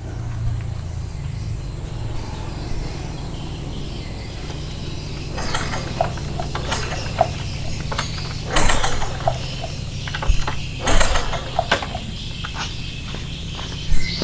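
Honda Supra 125 single-cylinder engine being turned over by its kick starter in several short bursts from about five seconds in, without firing: there is no ignition spark. A steady low hum runs underneath.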